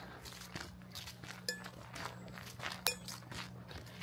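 Footsteps crunching softly on a woodland trail, with two sharp little clicks, one about a second and a half in and one near three seconds.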